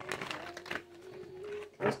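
Soft rustling of a tarot deck being picked up and handled in the hands, with a faint, steady held hum underneath.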